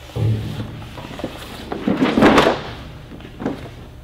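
Large D-size paper blueprints being pulled from a flat-file blueprint cabinet and spread out on its top: a thump near the start, then paper rustling and crackling, loudest about halfway through.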